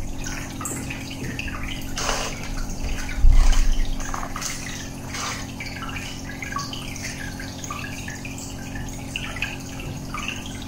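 Aquarium air bubbler: a stream of bubbles gurgling and popping in quick, irregular drips over a steady low hum. A dull low thump about three seconds in is the loudest moment.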